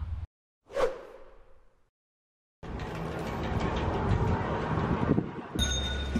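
A single whoosh transition effect about a second in, fading away quickly. After a short silence, steady background noise runs from a little before halfway, and it changes abruptly near the end.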